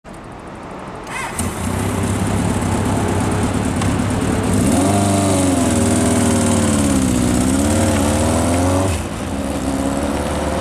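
Honda CB750F Integra's air-cooled inline-four running, getting louder about a second and a half in. From about five seconds its pitch rises and falls as the bike pulls away, then drops back near the end as the throttle eases.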